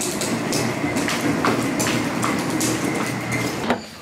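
Wheels of a wheeled plastic cooler rolling across a concrete floor: a steady rumble with a few scattered clicks, stopping near the end.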